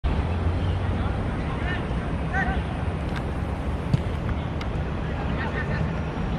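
Wind buffeting the microphone, with a few short distant shouts from players and one sharp thud about four seconds in: a football being struck for a corner kick.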